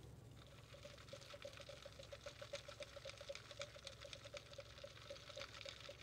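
Near silence: faint room tone with a faint hum that pulses several times a second and scattered faint ticks.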